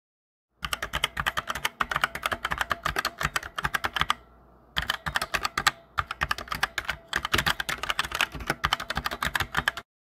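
Computer keyboard typing sound effect: rapid key clicks in two runs, with a pause of under a second about four seconds in.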